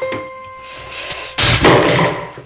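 A sudden, very loud crash about one and a half seconds in, lasting about half a second, preceded by a short rising rush of noise; it is the loudest thing here and cuts off a held piano note.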